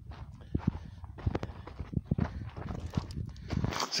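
Footsteps crunching on a gravelly, rocky dirt track, irregular steps while walking.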